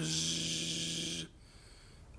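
A man imitating a blowlamp flame with his voice: a steady buzzing, hissing 'bzzz' held for just over a second, then cut off.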